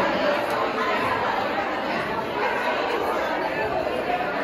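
Crowd chatter: many people talking at once in a steady, overlapping babble in a large hall.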